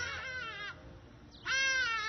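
A young woman's voice breaking into high-pitched, wavering crying between words. It trails off near the start and comes again about one and a half seconds in.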